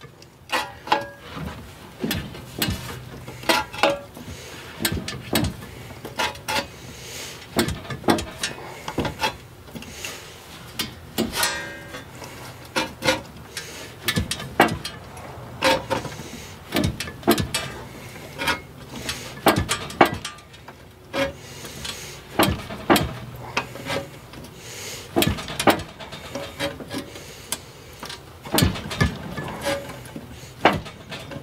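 Hand-lever sheet-metal shrinker being worked along the folded edge of a steel patch panel: repeated irregular clicks and clanks of the jaws gripping and the lever, about one or two a second, with a brief ringing squeal of metal partway through. Each stroke shrinks the flange to bring the curve back into the piece.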